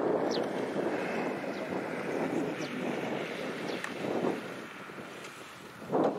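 Single-cylinder diesel engine of a two-wheel walking tractor running under load as it pulls a disc plough through dry soil, with wind on the microphone. The sound eases off briefly about five seconds in, then comes back up sharply at the end.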